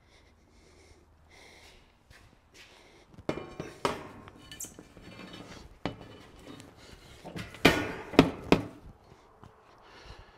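Steel tubing cargo basket with an expanded-metal floor clanking and rattling as it is lifted into the back of a Jeep and set in place. It starts a few seconds in, with a cluster of sharp metal knocks near the end as it settles.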